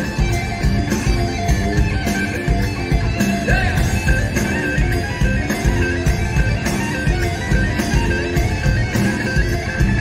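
Live rap-metal band playing an instrumental passage: electric guitar over a driving bass and drum groove, with no vocals.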